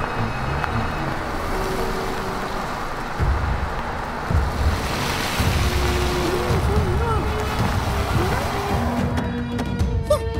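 Cartoon off-road jeep engine sound effect, a steady rumbling drive, under background music with a few held notes. A short wavering voice sound comes in during the second half.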